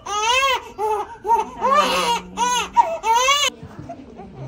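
One-month-old newborn crying hard in pain while receiving a BCG vaccination injection: loud, high-pitched wails in short repeated bursts, about every half second. The crying cuts off suddenly near the end.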